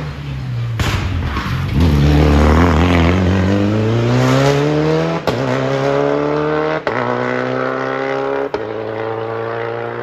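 Rally car at full throttle on a special stage, loudest early on as it comes past, then its engine note climbing and dropping back through three quick upshifts as it accelerates away.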